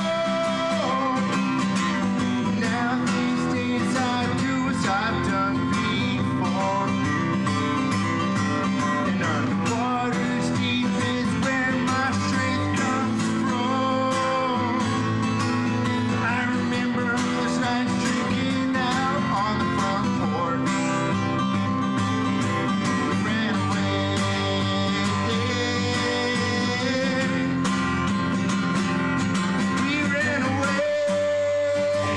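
A man singing while strumming an acoustic guitar, live and unaccompanied by other instruments.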